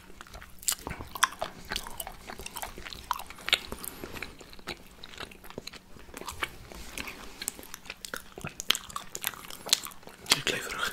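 Close-miked biting and chewing of iced gingerbread by two people: many irregular crisp crunches, with chewing between them.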